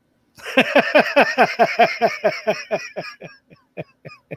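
A man laughing heartily: a quick run of short "ha" bursts, each dropping in pitch, that starts about half a second in and trails off near the end.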